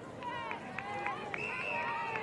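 Several voices shouting on and around a football ground over the crowd's noise during a tackle.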